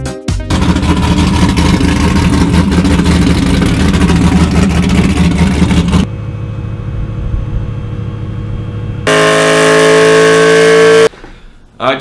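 Ford Mustang GT's 4.6-litre three-valve V8 running loud. After a cut it settles quieter, then revs with rising pitch on a chassis dyno for about two seconds before cutting off abruptly.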